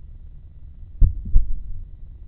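Two dull, low thumps about a third of a second apart, a second in, over a steady low rumble.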